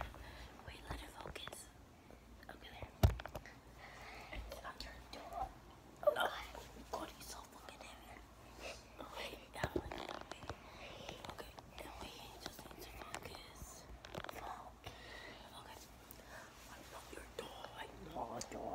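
Children whispering to each other close to the microphone, with a few sharp knocks about three and six seconds in.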